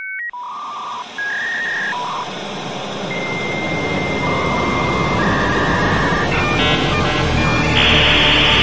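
Electronic outro sting in a computer style: a run of beeps at shifting pitches, some short and one held for about two seconds, over a wash of noise that swells steadily louder. A quick flurry of beeps comes near the end.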